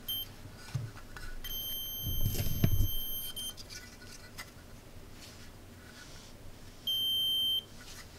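Buzzer of a DIY metal detector kit beeping a steady high tone, its signal that the printed search coil senses metal: a brief blip at the start, a longer, quieter beep of about two seconds, and a short loud beep near the end. Soft knocks from the board being handled come with the long beep.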